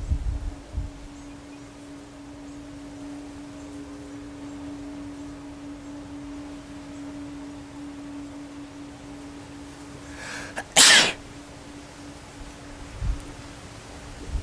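A man's single loud sneeze about eleven seconds in, after a short in-breath: a photic (sun) sneeze reflex set off by looking into bright sunlight.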